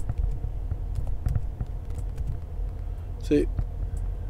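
A few keystrokes on a computer keyboard as a terminal command is typed, heard as scattered light clicks over a steady low rumble, with a short voiced sound from a man near the end.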